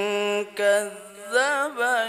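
A single voice chanting Quranic recitation in a melodic style, holding long notes with a wavering vibrato and sliding ornaments. The held note breaks off about half a second in, then rising and falling phrases follow.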